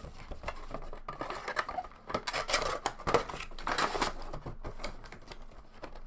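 Handling a Funko Pop vinyl figure and its cardboard window box: a clear plastic insert rustling and crinkling, with a run of light clicks and taps as the figure is packed back into the box.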